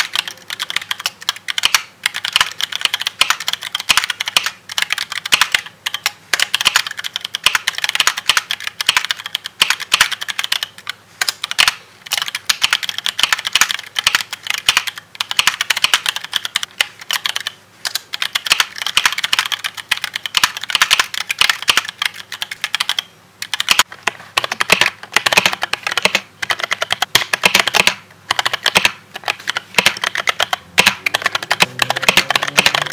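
Fast typing on a custom mechanical keyboard fitted with unlubed Dragon Fruit linear switches: a dense, continuous run of key clacks broken by a few brief pauses.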